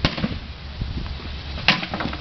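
Hammer blows striking a white cabinet frame being smashed apart: a sharp strike at the start and another about a second and a half later, with lighter knocks between.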